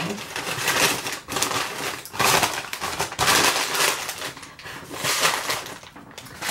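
Paper packaging rustling and crinkling in irregular bursts as it is handled.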